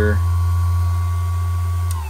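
Saker 12-volt cordless buffer polisher running steadily at its top speed setting of six, its pad spinning free in the air: a low hum with a steady motor whine. Near the end a click as it is switched off, and the whine begins to fall.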